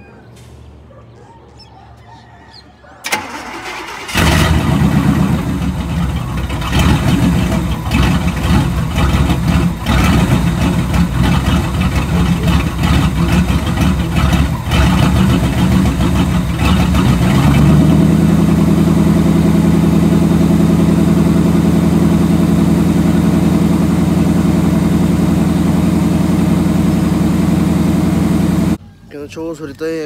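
Old-body-style GM pickup truck's engine starting: it catches about four seconds in and runs unevenly, the revs rising and falling, then settles to a steady idle hum from about seventeen seconds in. The sound cuts off near the end.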